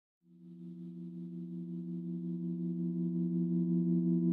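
A sustained synthesizer chord of several steady pitches, fading in and swelling steadily louder: the opening of the background music.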